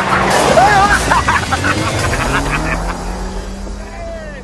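Car engine running hard, its note rising in the second half, with occupants whooping and laughing over background music.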